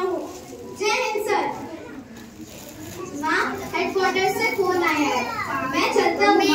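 A child's voice speaking into a microphone, in two stretches with a short pause near the middle.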